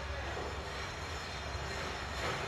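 Anchor chain of the carrier Enterprise running out as the anchor is dropped: a steady low rumble with rough mechanical noise above it.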